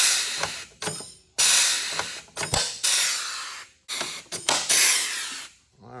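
Pneumatic pop rivet gun setting temporary aluminium pop rivets: several bursts of air hiss, each starting sharply, with short snaps in between.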